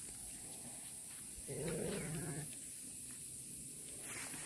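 Garut sheep bleating once, a single call about a second long near the middle.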